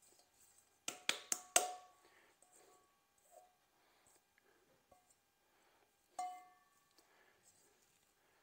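Stainless steel mixing bowl knocked and tapped while the last shredded cheese is shaken out of it, each knock leaving a short metallic ring. There is a quick cluster of four sharp knocks about a second in and a single knock near six seconds.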